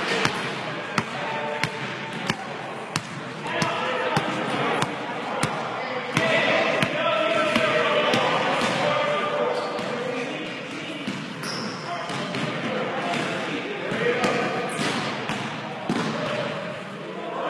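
A basketball bouncing on a hardwood gym floor: a string of sharp, irregular thuds, with players' voices and calls mixed in.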